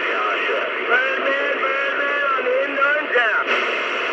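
A man's voice coming over a two-way radio's speaker, thin and narrow-sounding, with a steady static hiss behind it. The voice stops near the end, leaving just the hiss.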